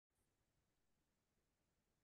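Near silence: only a very faint recording noise floor.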